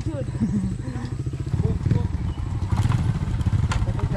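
Small motorcycle engine running with a steady low pulse, growing louder about halfway through. A couple of sharp clicks come near the end.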